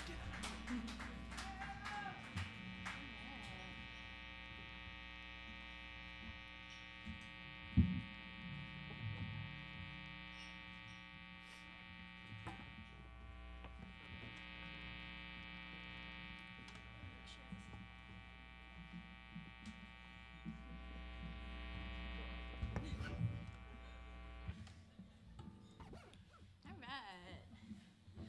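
Steady electrical buzz from the stage amplification, a mains hum with many overtones, which cuts off suddenly about 24 seconds in. There is a single thump about eight seconds in.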